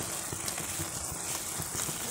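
Pot of rice and fava beans cooking on the stove, giving a steady soft crackle and bubbling.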